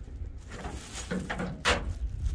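Plastic wrapping crinkling and rustling as a wrapped disc golf basket part is handled, with scattered light clicks and a louder crinkle near the end, over a steady low rumble.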